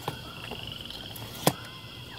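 Telescoping handle of a soft-sided rolling suitcase pulled up, locking with a sharp click about one and a half seconds in, after a lighter click at the start. A steady high-pitched buzz runs underneath.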